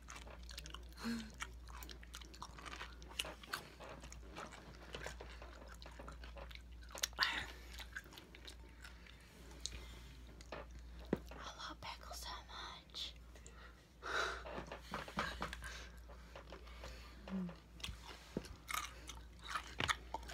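A person biting and chewing pickles, with crunching and wet mouth noises coming in irregular clusters. There are short hummed 'mm's about a second in and again near the end.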